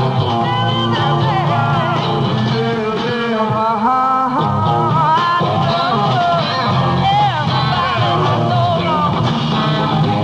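Live rock band performance: a singing voice over electric guitar and a drum kit.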